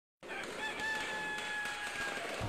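A rooster crowing: one long held call over a bright hiss.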